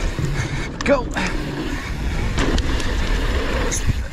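Downhill mountain bike rolling fast over a dirt trail: steady tyre rumble and wind buffeting the camera microphone, with a few small clicks and rattles from the bike.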